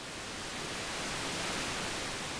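White-noise swell closing an electronic dance track: an even hiss with no beat or melody, growing louder to a peak about one and a half seconds in, then starting to ease off.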